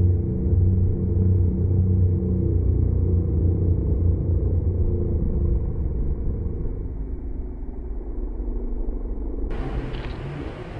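A low, steady rumbling drone with sustained deep tones, thinning out after about seven seconds. Near the end a different sound cuts in.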